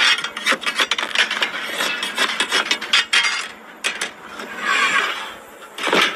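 Loaves being scraped off the inside wall of a clay tandoor with a long-handled metal scraper: a dense run of scrapes, clicks and knocks, then longer rasping scrapes near the end.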